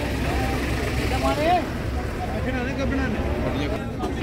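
People's voices talking over a steady low rumble.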